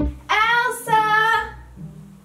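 A high, child-like voice singing two held notes in quick succession, the second a little lower, over quiet music.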